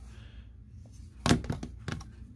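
A quick cluster of sharp plastic clicks and clacks starts a little over a second in, from a hard plastic phone belt-clip holster being turned over and handled.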